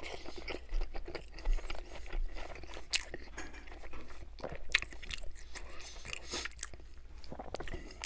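Close-miked chewing of a Burger King Original Chicken Sandwich with extra lettuce: wet mouth sounds broken by irregular sharp crunches as the breaded chicken and lettuce are bitten and chewed.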